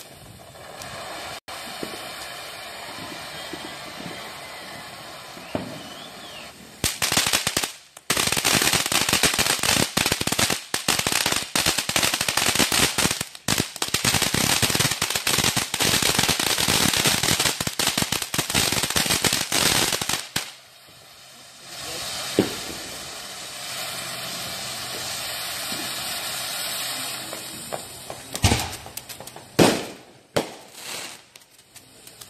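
Consumer ground fireworks: a fountain hissing steadily, then a long run of dense, rapid crackling from about 7 s to 20 s. The hiss returns after that, and a sharp bang comes near the end.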